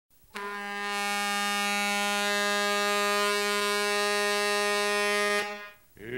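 One long, steady horn blast held at a single pitch for about five seconds, then cut off.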